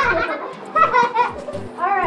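High children's voices and laughter over background music with a steady drum beat.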